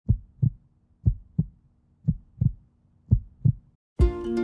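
A heartbeat sound effect: four double thumps, lub-dub, about one a second, over a faint low hum, stopping shortly before the end.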